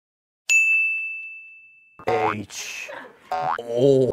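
A single bright ding, a bell-like editing sound effect, struck once about half a second in and ringing down over about a second and a half. A man's voice follows.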